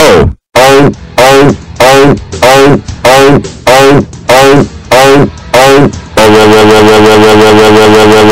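Deliberately overdriven, extremely loud and distorted electronic sound effect: a falling tone repeated about ten times, roughly three every two seconds, then a single held tone from about six seconds in.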